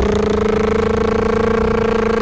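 A single loud, steady pitched tone with overtones, held at one unchanging pitch.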